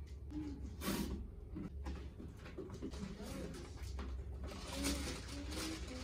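Cardboard parcel being opened by hand: rustling and crinkling of the box and its packaging, with a sharp crackle about a second in and smaller knocks and rustles after it.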